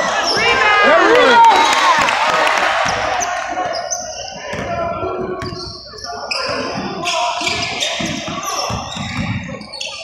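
Basketball game on a hardwood gym floor: sneakers squeal in quick rising and falling chirps for the first second or two, then a ball is dribbled and short knocks continue, with voices echoing in a large hall.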